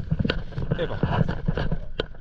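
A man's voice giving short coaching calls, over the steady low rumble of wind on the microphone and the splash of a stand-up paddleboard paddle stroking through the water.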